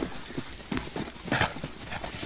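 Hyenas struggling with a zebra: two short animal calls and scuffling, over a steady high chirring of crickets.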